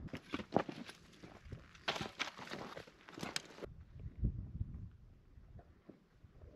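Footsteps crunching on loose rock and gravel: an uneven run of steps for about three and a half seconds, then a few faint scattered steps.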